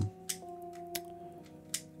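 Quiet background music with held notes, over a few light plastic clicks from a Ghost Pyraminx twisty puzzle being handled and turned in the hands; the sharpest clicks come about a third of a second in and near the end.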